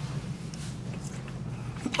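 Faint biting and chewing of a cooked asparagus spear, over a steady low hum.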